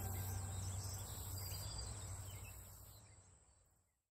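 Faint background ambience: a steady low hum and hiss with faint high chirps, fading out to silence about three seconds in.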